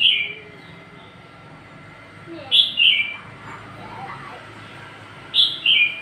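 A bird calling three times, about every two and a half to three seconds; each call is a short two-part chirp that falls in pitch.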